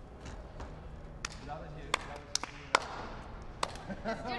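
A few sharp knocks and slaps, about five spread over two and a half seconds, as a gymnast works on a wooden balance beam, with indistinct voices in the background.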